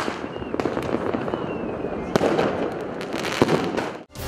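Fireworks going off in the night sky: a dense crackle of small bursts broken by sharp bangs, the loudest about two seconds in and near the end. A faint whistle glides downward in the first half.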